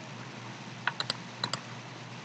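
Light clicks of a computer keyboard and mouse, about five of them in quick succession in the second half, over a low steady hum.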